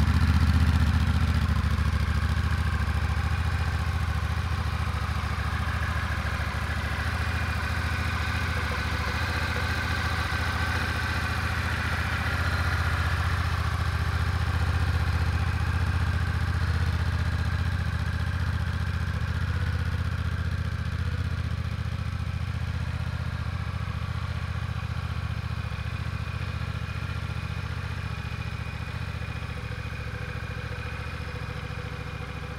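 Honda Rebel 1100's 1,084 cc parallel-twin engine idling steadily after start-up, heard through the stock exhaust. It gets gradually quieter toward the end.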